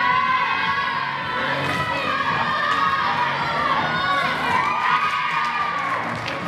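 A group of girls cheering and shouting, many high voices overlapping in long drawn-out calls that rise and fall.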